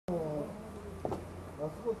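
Voices of people talking near the camera, over a steady low hum.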